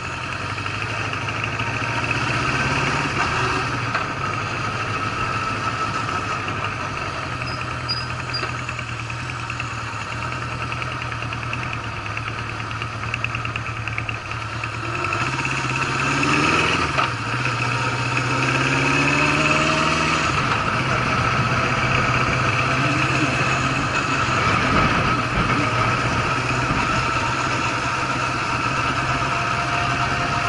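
Honda CB750 inline-four engine running on the move. Past the halfway point its note climbs and drops a couple of times, then it runs steadily again.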